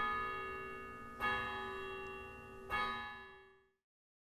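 A bell struck three times, about a second and a half apart, each stroke ringing on and dying away; the ringing fades out shortly before the end.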